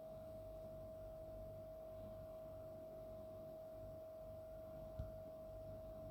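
A faint, steady, single-pitched hum over low background noise, with one short click about five seconds in.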